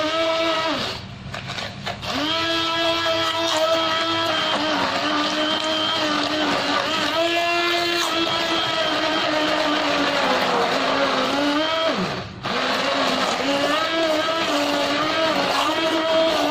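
Electric hand blender whirring as it beats eggs and sugar in a plastic bowl, its pitch sagging and rising as the load on the motor changes. It drops out briefly about three-quarters of the way through, then runs on.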